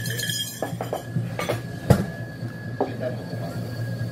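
Dishes and cutlery clinking: a few light clinks, with one sharper clink about two seconds in, over a steady low background hum.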